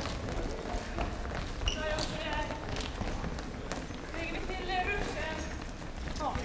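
Indistinct voices talking in a large hall, over a steady low hum, with a few short clicks and knocks.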